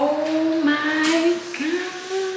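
A woman singing a wordless tune in long held notes, with a slide up in pitch near the end.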